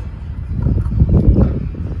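Low, uneven rumble of wind buffeting the microphone, swelling around the middle.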